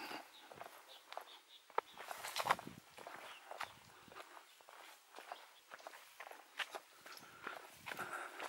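A hiker's footsteps on a dry, stony dirt trail, going downhill: faint, uneven steps.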